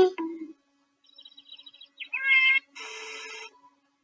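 A cat meowing once, a short rising call about two seconds in, followed at once by a half-second noisy, rasping sound.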